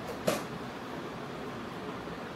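One brief, sharp click about a quarter of a second in, over a steady room hum.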